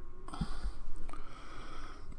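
Soft handling noise as fingers press a rubber gasket onto a small metal atomizer part, with a couple of low thumps, the clearest about half a second in.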